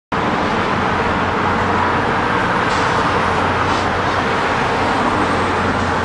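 Steady city traffic noise, an even wash of sound with a low steady hum beneath it.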